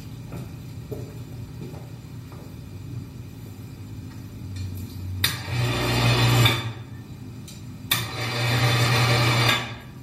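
Electric ceiling hoist motor, worked from a hand-held pendant control, running twice for about a second and a half each time with a steady low hum, each run starting abruptly.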